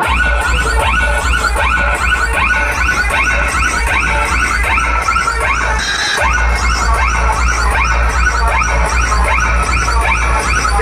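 Loud dance music played through a large outdoor DJ sound system, with heavy, steady bass and many short rising sweeps in the upper range. The bass cuts out briefly about six seconds in, then comes back.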